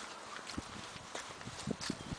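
Footsteps on gravel, soft and irregular.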